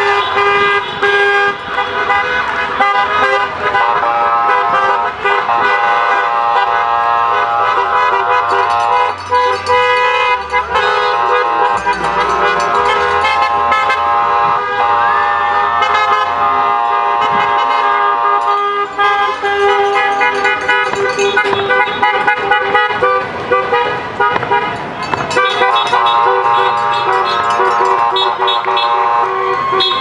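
Car horns from a line of passing cars honking almost without a break, several at once, with voices mixed in.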